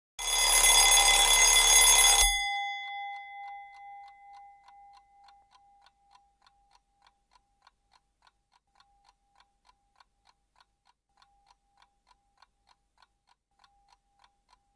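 An alarm clock rings loudly for about two seconds and cuts off abruptly, leaving a fading ring. Then a clock ticks faintly and steadily at a quick even pace.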